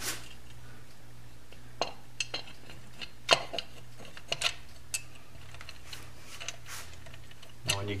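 Light metal clicks and taps as a Honda CB750's polished aluminium transmission cover is worked by hand onto the engine case over its alignment dowels, the loudest tap about three seconds in. A steady low hum underneath.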